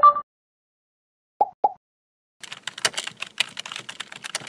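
Keyboard typing sound effect: a quick run of key clicks starting about two and a half seconds in, for animated text being typed into a search bar. Before it, a short bright two-tone blip at the very start, the loudest sound, and two short pops about a second and a half in.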